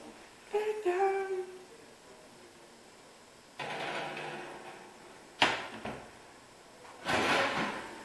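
Kitchen handling sounds as a glass baking dish of brownies is lifted out of an electric oven with towels: a scrape, one sharp knock about five seconds in, and a louder rustling clatter near the end. A short hummed voice sounds near the start.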